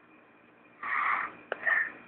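Two breathy, whispery bursts from a person: a longer one a little under a second in, then a sharp click and a shorter burst near the end.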